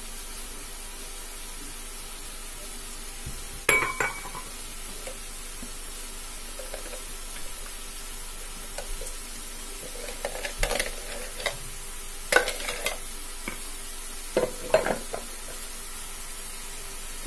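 A metal wire whisk clinking and scraping against bowls while pancake batter is mixed: one sharp clink about four seconds in, then a run of irregular light clicks and scrapes over the last several seconds, over a steady faint hiss.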